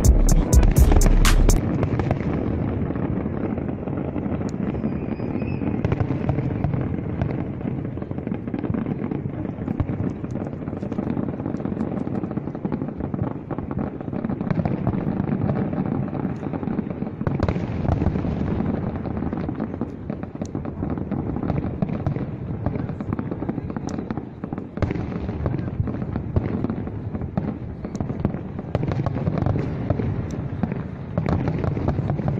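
A fireworks display: a steady rumble of bursts with many scattered sharp crackles and pops. It opens with about a second of loud, evenly spaced pulses that then stop.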